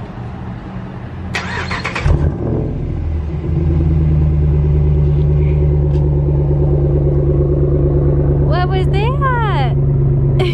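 A vehicle engine is cranked and catches about two seconds in, then settles into a loud, steady, low idle.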